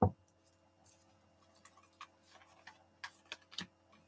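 A deck of oracle cards being cut and handled: a sharp tap at the start, then faint scattered clicks of cards against each other.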